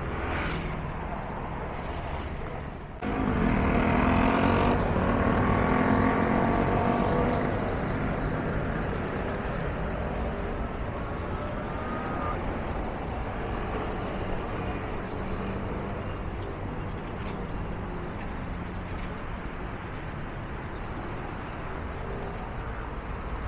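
City road traffic: cars and motor scooters passing on a wide street, with one vehicle's engine louder for several seconds from about three seconds in, then a steady traffic hum.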